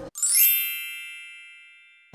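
A single bright, bell-like ding sound effect, struck just after the start and ringing away slowly over about two seconds.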